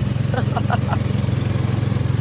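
Small petrol engine of a go-kart running steadily while the kart is driven, a low even drone with a fast pulse.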